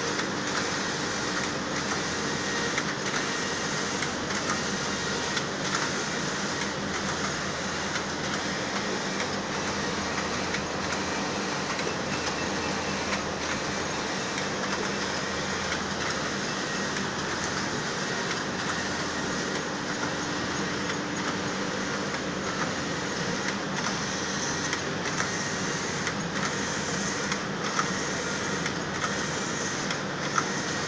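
Computerized flat knitting machines running: a steady mechanical din with a few steady hum tones and faint clicks scattered through it.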